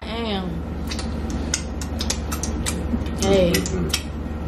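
A woman's wordless voice sliding down in pitch twice, once near the start and once near the end, over scattered light clicks and taps and a steady low hum.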